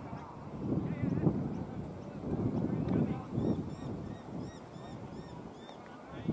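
Birds calling outdoors, with a run of short high chirps repeating about three times a second in the second half. Gusts of wind on the microphone sound underneath, loudest in the first half.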